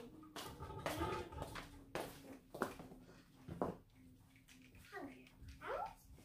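A young child's voice in short, scattered babbles and vocal sounds, one of them rising in pitch near the end, over a steady low hum.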